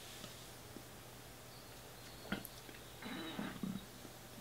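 Quiet room with a low steady hum, a single small click about two seconds in, and a short breathy sound from the man, under a second long, near the end.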